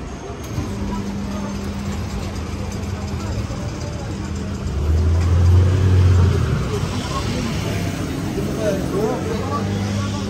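Street ambience with a motor vehicle's engine running close by: a steady low hum that swells loudest about five to six seconds in. Passers-by are talking near the end.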